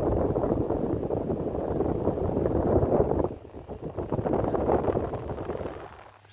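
Air from a running vintage Toshiba stand fan buffeting the microphone: an uneven, rushing rumble that eases briefly a little after three seconds in.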